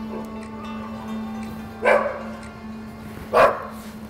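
A dog barks twice, about two seconds in and again near three and a half seconds, over background music with a steady low drone.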